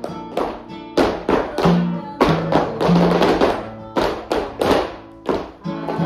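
Flamenco guitar music in soleá style, sustained notes cut across by sharp percussive strikes a few times a second.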